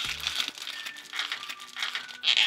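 Crinkling of a thin plastic blind-box pouch as hands work it open and pull out a small plastic toy figure, over soft background music.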